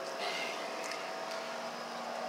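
Steady background hum and hiss, with a faint held tone and a few light clicks.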